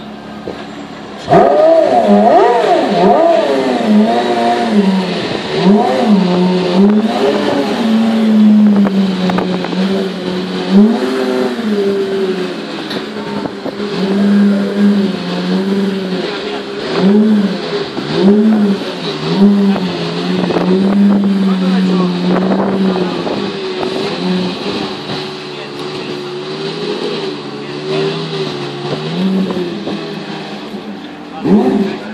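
Porsche Carrera GT's 5.7-litre naturally aspirated V10 running loudly. It comes in suddenly about a second in, then gets repeated throttle blips that rise and fall in pitch between spells of steady running.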